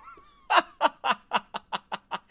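A man laughing: a run of short, quick bursts of laughter, about five a second, starting about half a second in.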